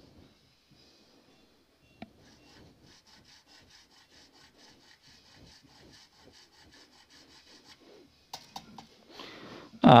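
Nut-slot file rasping back and forth in a bass guitar's nut slot in a steady run of short, even strokes after a single click, with a few light knocks near the end. The slot is being filed deeper to lower the string because it still sits too high.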